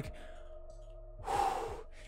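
A man sighing into a close microphone: one breathy exhale starting a little over a second in and lasting under a second.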